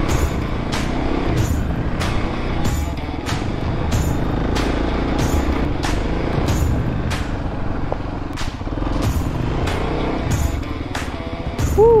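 Kawasaki KLX250 single-cylinder four-stroke engine running as the bike is ridden along a dirt trail, with background music with a steady beat laid over it.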